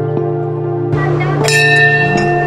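Brass temple bell struck once about a second and a half in, ringing bright over calm ambient background music, just after a short rush of noise.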